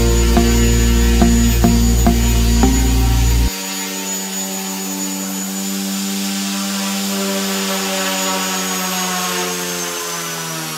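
Background music with a steady beat cuts off about three and a half seconds in. It leaves the steady whir of the XK K130 RC helicopter's brushless motor and rotor, whose pitch slowly sinks toward the end as the helicopter sits on the floor.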